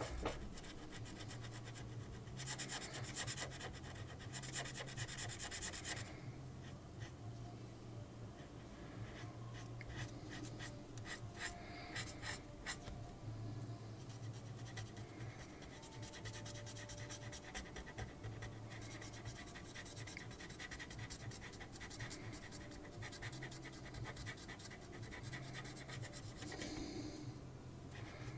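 Felt-tip pen scratching on paper as it colours in with quick back-and-forth strokes, in bursts that come and go.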